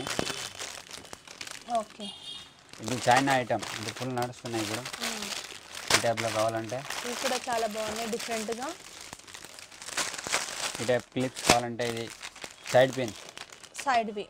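Clear plastic packets of hair clips crinkling and rustling as they are handled and laid down, under people talking.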